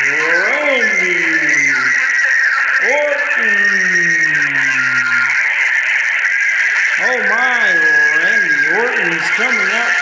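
A man's voice in long drawn-out vocalizations rather than words. There is a rising-then-falling call at the start, a long falling call about three seconds in, and a wavering, warbling one in the second half. A steady high-pitched whine and hiss runs underneath.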